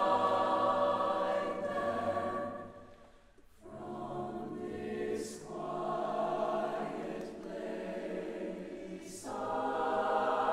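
Mixed choir singing a cappella with the long reverberation of a stone church. A held chord dies away about three seconds in, then after a brief pause the voices come back softly and swell louder again near the end.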